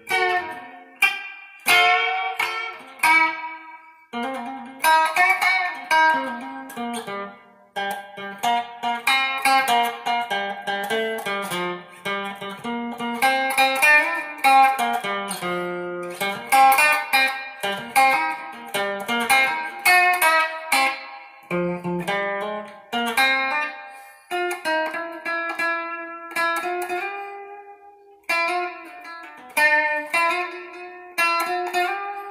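Solo electric guitar played freestyle: a continuous run of quickly picked single notes and chords, settling into longer held notes near the end.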